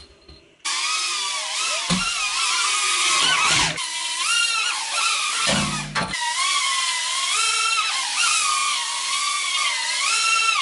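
Tiny BetaFPV Beta75 quadcopter's motors and propellers whining at high pitch, the pitch rising and falling as the throttle changes, with brief dips just before 4 s and around 6 s. A few low knocks are heard near 2 s, 3 s and 5.5 s.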